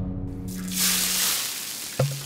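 The last held notes of music die away while, about half a second in, a hot cooking pan starts sizzling with a rush of hiss that slowly fades.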